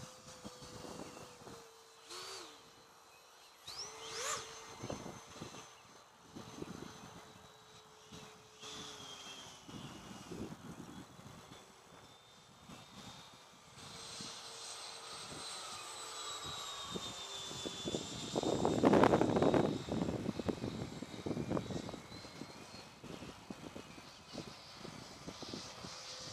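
90 mm electric ducted-fan RC jet (Stinger) flying, heard as a thin, fairly steady whine whose pitch drifts with throttle. About three-quarters of the way through a louder rushing swell rises and fades.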